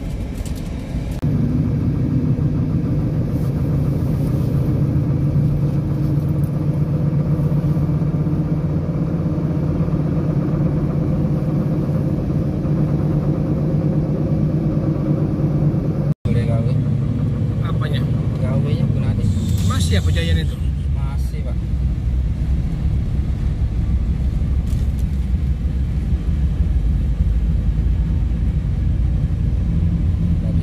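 Steady engine and road noise heard inside a moving car, a low hum that changes abruptly at a cut about halfway through.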